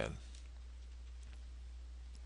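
Faint clicks and taps of a stylus on a tablet as a word is handwritten, over a low steady hum.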